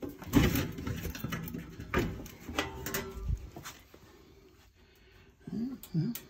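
A run of knocks, clicks and rattles as the metal housing of a stainless steel drinking fountain is handled at close range, dying down after about three and a half seconds.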